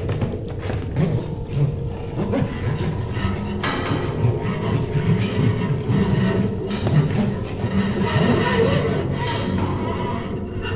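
Free-jazz improvisation on keyboard, with busy low bass notes throughout and scattered sharp percussive knocks and scrapes.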